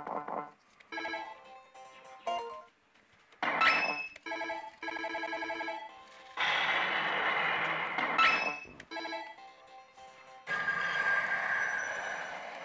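Millionゴッド 神々の凱旋 pachislot machine playing its electronic sound effects and jingles as the reels are spun: short chiming tones, a rapidly pulsing tone a few seconds in, and two longer hissing effect sounds in the second half.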